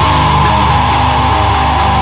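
Heavy metal music ending on a held, distorted electric guitar chord, with a steady high tone sustained over it and no drums.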